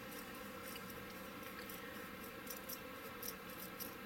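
Faint scratching of a round diamond needle file rasping plastic as it widens a magnet hole in a small plastic model hull, in short light strokes that come more often in the second half.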